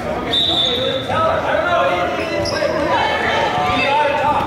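A volleyball bouncing on the hardwood gym floor, with players' and spectators' voices echoing in the hall. A short, steady high-pitched tone sounds about a third of a second in.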